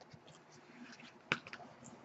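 Faint handling of an opened art-print folio as a softcover book is lifted out, with one sharp click a little past a second in.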